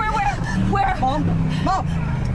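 A woman's high-pitched, broken cries over the steady hum of a car engine, heard from inside the moving car.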